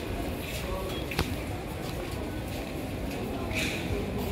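Ambience of a busy metro station concourse: indistinct voices of passersby over a steady background noise, with a single sharp click about a second in.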